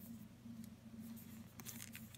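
Faint rustling of a paper sticker label being pressed and smoothed onto a glass bottle by fingers, with a few soft clicks near the end, over a steady low hum.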